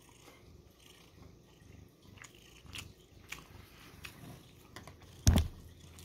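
A person chewing a mouthful of canned salmon, with small soft mouth clicks, and a cat purring faintly underneath. A brief louder sound comes about five seconds in.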